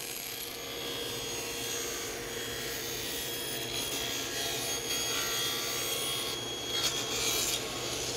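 Table saw ripping a rough cedar shake board into a thin strip, the blade cutting steadily along the board as it is pushed through. A few sharper crackles come near the end.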